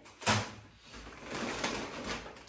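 A single knock about a quarter second in, then the crackling rustle of a plastic shopping bag as a hand reaches into it to take out groceries.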